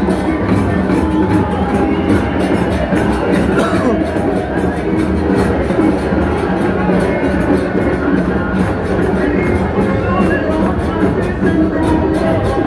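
Football supporters' barra in the stands: drums beating a steady rhythm under the voices of a large crowd.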